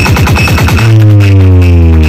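Electronic dance music played very loud through a large stacked DJ speaker rig. Deep bass tones glide slowly downward in pitch, with a quick stuttering run of falling sweeps in the first second before one long, deep bass note.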